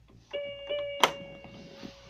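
Electronic keyboard sounding a held note, joined by a second note, that rings and fades out, with one sharp click about a second in.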